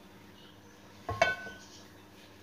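A non-stick frying pan set down on a gas stove's cast-iron grate: a single knock about a second in, with a short metallic ring after it.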